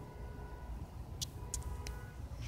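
Faint low drone of a Cessna light aircraft's engine in the distance, with a few sharp clicks in the second half as the phone is handled.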